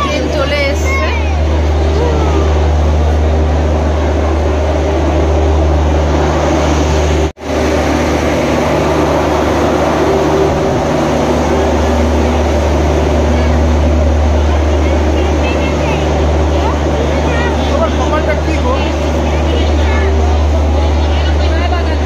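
Diesel generator sets in a train's luggage, brake and generator car running with a loud, steady low drone and hum, with faint voices over it. The sound cuts out for an instant about a third of the way through.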